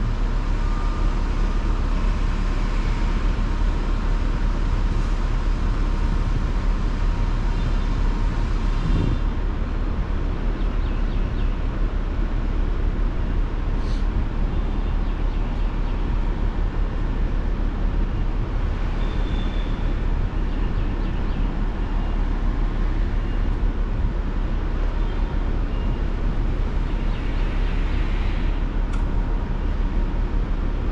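Diesel engine of a Grove mobile crane running steadily under load during a lift, a constant low rumble with no change in pitch.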